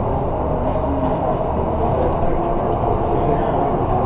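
Steady low rumble and hum of an ice arena, with indistinct spectator chatter mixed in.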